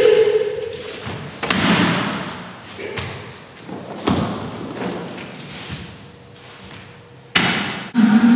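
Jujutsu throw on a dojo mat: a short shout as the attack comes in, then several thuds of a body and feet hitting the mat over the next few seconds, each with a hall's echo. Another sharp impact comes near the end.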